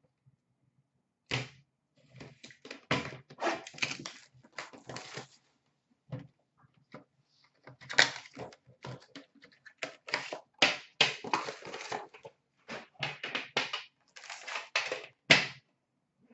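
Cardboard boxes of hockey cards being torn open by hand: irregular bursts of ripping and crackling card stock, with sharp knocks as the boxes are handled.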